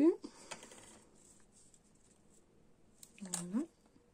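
Faint handling of small paper and lace pieces on a cutting mat, with a few light clicks near the start and soft rustles. About three seconds in, a short hum from the crafter's voice rises in pitch.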